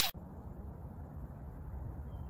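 Steady low outdoor background rumble with a faint hiss. It follows the tail of a whoosh sound effect that cuts off right at the start.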